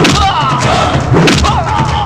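Fight-scene movie soundtrack: repeated punch and thud sound effects with shouting voices over a low, droning background score.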